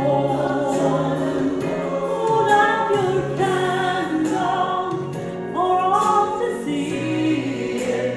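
A woman singing a slow Christian solo, her voice holding and sliding between long notes, over steady low instrumental accompaniment.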